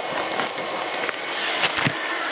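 Steady rushing noise of hot-air popcorn poppers modified into a coffee roaster, with sharp clicks and rustles over it, a cluster of them near the end.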